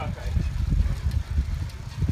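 Wind buffeting the microphone of a rider on a moving bicycle, an uneven low rumble, with tyre and road noise under it.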